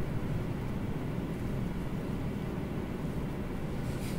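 Steady low rumble of room noise, with nothing else standing out.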